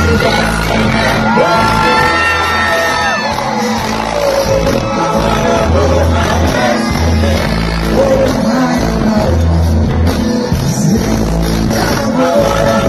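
Live reggae music played loud through a concert sound system: a deep, repeating bass line under singing, with long held notes in the first few seconds, and shouts and whoops from the crowd.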